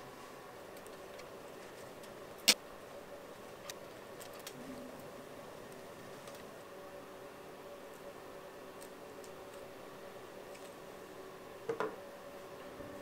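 Copper wire being wrapped by hand around a bundle of broom bristles: scattered faint ticks, one sharp click about two and a half seconds in and a pair of clicks near the end, over a faint steady hum.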